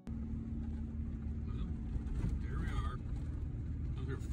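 Steady low rumble of a vehicle driving on a snow-covered road, heard from inside the cab, with a brief voice-like sound about halfway through.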